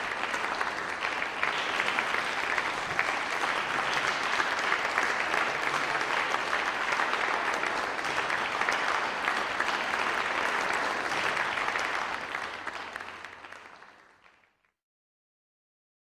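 Audience applauding steadily, then fading away over the last few seconds.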